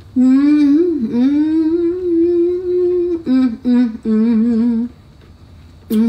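A person humming a long, drawn-out "mmm" of enjoyment while eating, wavering up and down in pitch, followed by three shorter "mm" sounds, the last one wobbling.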